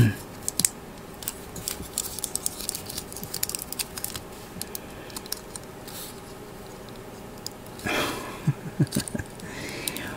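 Light clicks and taps of hard plastic model-kit parts being handled and pressed together, the head of a snap-fit Gunpla model that won't seat. A brief breathy exhale with a low vocal grunt comes about eight seconds in.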